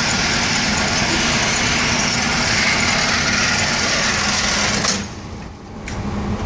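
Motorized target carrier of an indoor range lane running steadily with a low hum, bringing the paper target back along its track. It cuts off with a click about five seconds in and starts again a second later.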